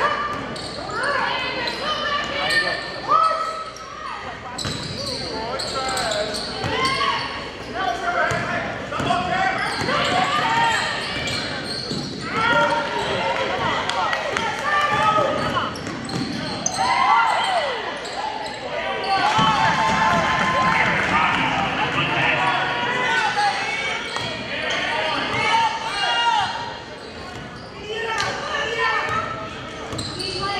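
Sounds of a basketball game in a gymnasium: a basketball dribbled on the hardwood court, with indistinct voices of players, coaches and spectators echoing through the hall.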